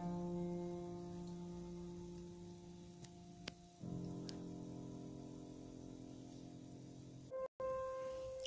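Grand piano playing soft, held chords: one chord struck and left to ring and fade, then a second chord about four seconds in, also held and fading.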